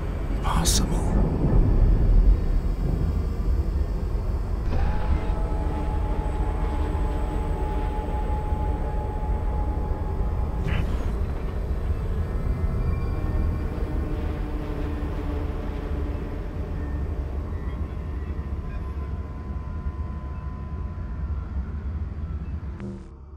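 Sci-fi film sound design: a deep, steady rumble with sustained droning tones over it, clearest from about five seconds in to about ten. Two brief sharp knocks cut through it, one about a second in and one about eleven seconds in.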